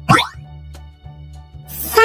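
A short rising cartoon 'boing' sound effect right at the start, over soft, steady children's background music. Near the end a voice begins reading the next syllable, its pitch falling.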